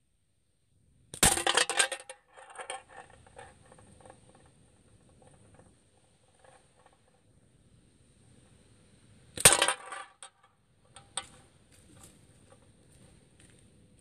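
Two slingshot shots about eight seconds apart, each a sharp hit at the target followed by a brief rattle of clicks as the shot strikes and falls about it.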